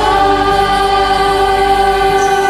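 Karaoke song: women's voices holding one long note together over a backing track.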